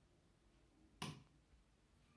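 A single short, sharp click about halfway through: the switch in the base of a homemade battery-powered LED lamp being pressed to turn the lamp off. Otherwise near silence, room tone.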